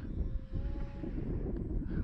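Wind buffeting the microphone, with the faint drone of a distant electric RC plane's brushless motor and propeller, a steady tone that holds for about a second before fading into the wind.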